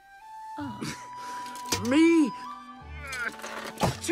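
Background film score with held tones, over which a cartoon character makes wordless vocal sounds: a loud rising-and-falling call about two seconds in and another near the end.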